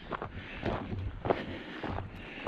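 Footsteps on a loose stony gravel track: four evenly paced steps at walking pace.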